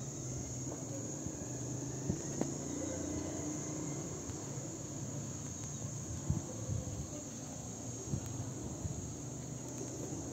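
Steady high-pitched insect trill, crickets by its character, running without a break, over a low steady hum and a few faint ticks.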